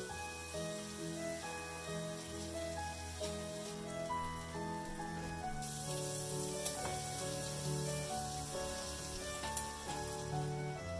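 Background music with a melodic line plays throughout. A little past halfway, sausage pieces start sizzling in a hot cast-iron skillet, a steady hiss, and a couple of brief clicks follow near the end.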